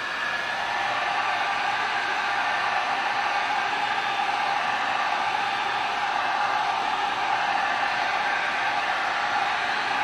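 Handheld heat gun running, a steady whir with a hum in it as it blows hot air, settling to full speed about a second in.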